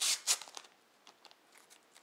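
Thin plastic protective film crinkling as it is peeled and handled off the glossy casing of an external hard drive: a few sharp crackles in the first half second, then only faint rustles.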